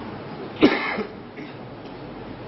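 A person coughs once: a sudden, sharp cough a little over half a second in, with a short catch just after it.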